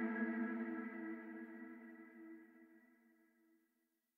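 The last held chord of a sludge/doom metal track, a sustained electric-guitar chord with effects, ringing out and fading away to silence about three seconds in.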